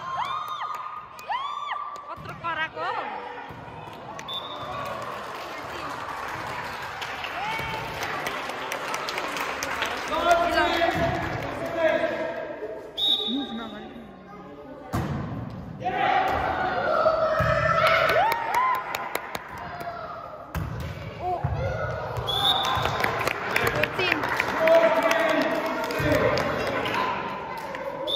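Indistinct voices and shouts of players and watching children echoing in a gymnasium, with the thumps of a volleyball being hit and bouncing on the floor.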